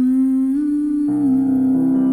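A voice humming a slow lullaby melody in long, held notes that step gently up and down in pitch. Soft sustained instrumental chords join about a second in.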